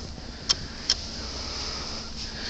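Steady background hiss of an empty room, with two brief clicks about half a second apart in the first second.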